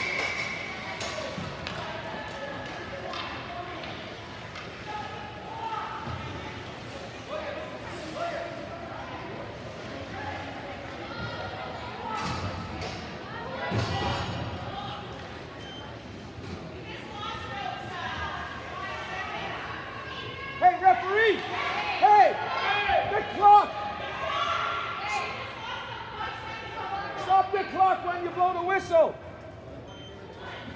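Ice hockey in an arena: sticks and puck clacking and thudding off the boards over a murmur of spectators' voices. From about twenty seconds in there is loud, high-pitched shouting.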